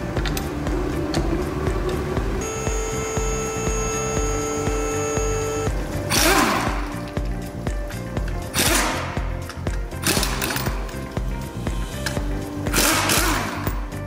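Background music with a steady beat throughout. Over it, a cordless impact wrench undoes the wheel bolts in four short, loud bursts, at about six, eight and a half, ten and thirteen seconds in, after a steadier whine a few seconds in.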